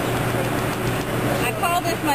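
Busy city street noise: people talking in the background over traffic, with a steady low engine hum.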